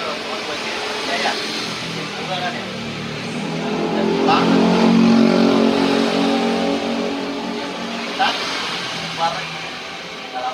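A passing motor vehicle on the street: its engine hum grows louder over about two seconds, peaks about five seconds in, then fades away.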